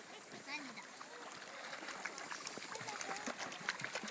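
Faint voices over a steady wash of shallow sea water around people wading.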